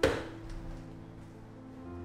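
A single sharp plastic clunk at the very start as the adjustable armrest of a KB-8911 mesh office chair is moved into position, followed by a short ring, with steady background music underneath.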